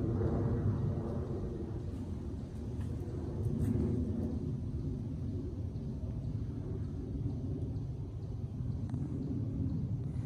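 Steady low rumble of wind on the microphone, with a few faint taps about three and a half seconds in.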